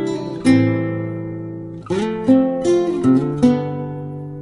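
Background music: acoustic guitar strumming and plucking chords, each one ringing out and fading before the next.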